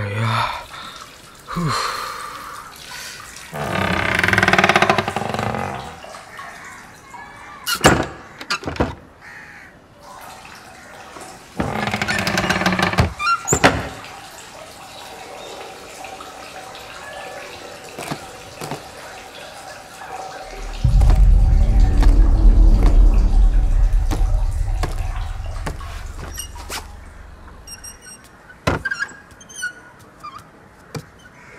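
Horror-film sound effects: scattered sharp knocks and short rising swells of noise, then a deep low rumble that starts suddenly about twenty seconds in and slowly fades away.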